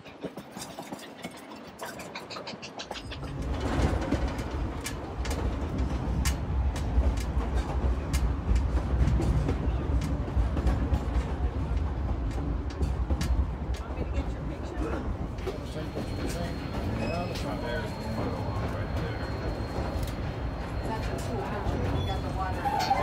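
Narrow-gauge passenger train rolling along the track: light clicking in the first few seconds, then a louder, steady low rumble from about three seconds in.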